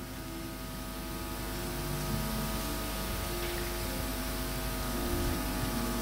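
Soft sustained keyboard chords, the notes changing slowly and the sound gradually growing louder, over a low steady hum.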